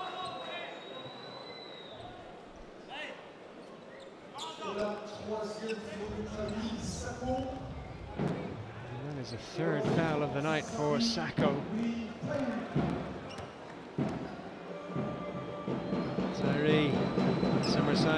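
Basketball arena during a stoppage in play: voices and crowd chatter in a large hall, with a basketball bouncing on the hardwood court now and then. The voices grow louder about halfway through.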